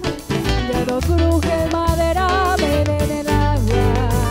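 Live band playing a cumbia fusion: drum kit, electric bass, keyboard, electric guitar and a tambor alegre hand drum, with a heavy bass line under a wavering melodic line.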